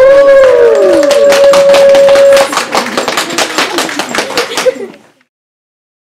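Audience clapping and whooping at the end of a song, with one long held 'woo' and several falling cheers over the applause. The sound cuts off suddenly about five seconds in.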